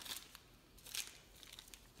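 Small plastic packaging bag crinkling faintly as it is handled, with a short rustle about a second in.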